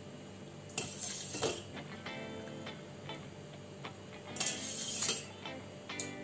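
Wire spider strainer clinking against a steel pot and swishing through water as grapes are lowered in, in two short bursts, about a second in and again past four seconds, with light ticks between. Faint background music runs underneath.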